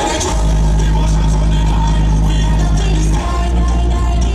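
Loud music played through a sound system, with a heavy held bass note that shifts about three seconds in.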